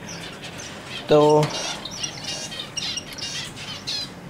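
Caged finches chirping: a rapid scatter of short, high calls.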